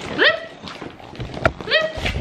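French bulldog puppy whining in two short, rising cries, one just after the start and one near the end, with a sharp tap about a second and a half in.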